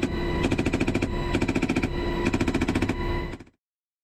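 An M240B machine gun fires from a UH-60 Black Hawk's door in several short bursts of rapid shots, about four bursts half a second apart, over the helicopter's steady engine and rotor hum. The sound cuts off suddenly near the end.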